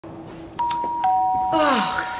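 Two-tone doorbell chime: a higher note about half a second in, then a lower note half a second later, both ringing on.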